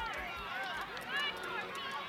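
Overlapping chatter and calls from spectators and young players on the sideline of an outdoor youth soccer game, with no single voice standing out.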